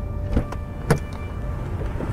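A passenger getting out of a car: two sharp clicks, the second louder, over a low steady rumble in the car's cabin.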